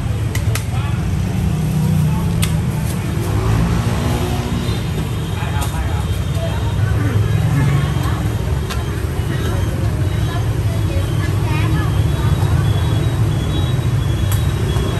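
Steady rumble of road traffic, with indistinct voices talking at times.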